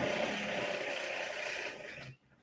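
Construction drilling by workers nearby: a steady mechanical whirr with a faint whine in it, easing off slightly toward the end.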